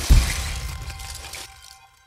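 Logo-intro sound effect: a deep boom just after the start, then a shattering, crumbling wash that fades away over about two seconds.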